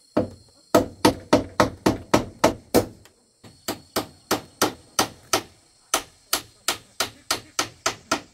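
A hammer striking hard and fast on a corrugated roofing sheet over a bamboo frame, fixing the sheet down. The blows come in three quick runs, about three or four a second, with short pauses between.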